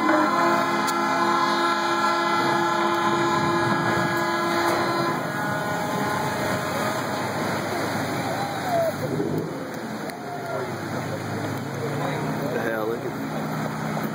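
A loud horn blast as the ship slides sideways down the launch ways into the river; the horn stops about five seconds in. Water rushing and splashing from the launch wave follows, with people's voices.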